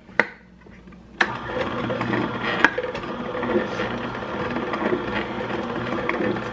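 Cold-pressed juicer: a click just after the start, then about a second in its motor starts and runs steadily with a hum and gear whir.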